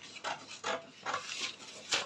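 Paper pattern rustling as it is handled, in a series of short strokes about two or three a second, the loudest near the end.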